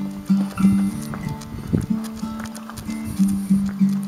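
Background acoustic guitar music, plucked notes repeating in a steady pattern.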